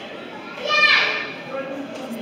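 A child's short, high-pitched kiai shout during a karate kata, falling in pitch, about half a second in, over the steady chatter of a crowd.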